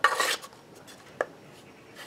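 Steel knife blade sliding into an ABS plastic sheath: a short scrape, then a single light click about a second later.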